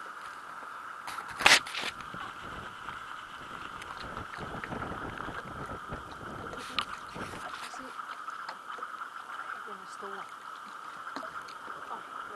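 Open-air ambience on a small boat on the water: wind and water noise under a steady mid-pitched hum, with one sharp knock about a second and a half in.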